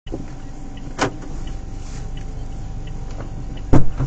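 Steady low hum inside a car's cabin while the car stands with its engine running. A sharp knock comes about a second in, and a louder, deeper thump comes near the end.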